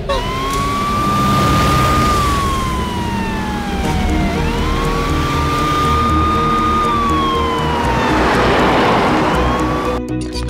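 Ambulance siren wailing in a slow rise-and-fall, about two full cycles, over steady road noise from the moving vehicle.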